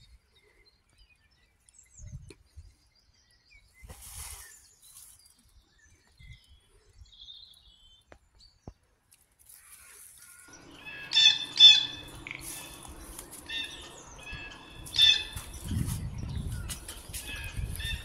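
Songbirds singing, starting about ten seconds in with repeated high calls, the loudest a little after that and again near fifteen seconds. Before that there are only a few faint rustles and soft knocks, and a low rumble like wind or handling noise comes in near the end.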